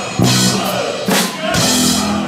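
Live band with electric bass, drum kit and orchestra playing the song's closing accents: two loud hits, each with a cymbal crash and a low bass note, about a second and a half apart, the second left to ring.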